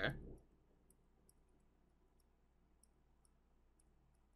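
Faint light clicks and ticks of a stylus on a tablet during handwriting, scattered every half second or so over near silence.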